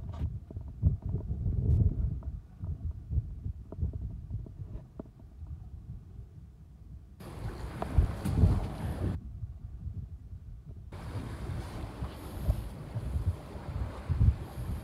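Wind buffeting the microphone in an uneven, gusty low rumble, with the hiss of wind and sea water coming in about halfway through and again over the last few seconds.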